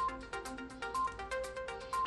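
Background news music with a steady ticking beat and short electronic notes that repeat about once a second.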